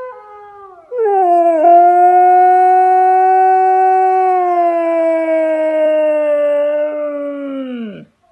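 A Siberian husky howling. A quieter note fades out in the first second; a loud, long howl then swoops in about a second in and holds for some six seconds, sinking slowly in pitch before dropping away at the end.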